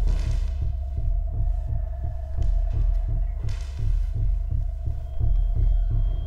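Horror film score or sound design: a fast, regular low pulse like a heartbeat under a steady held tone, with a thin high tone coming in near the end.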